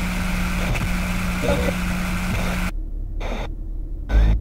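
Title-sequence soundtrack: a steady, dense noisy roar that cuts out sharply under three seconds in, followed by a couple of short choppy pulses as the logo lands.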